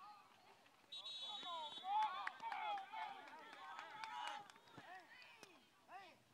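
A referee's whistle blows once, short and shrill, about a second in. Then a crowd of voices shouts and cheers, loudest for the next couple of seconds, with a few sharp knocks.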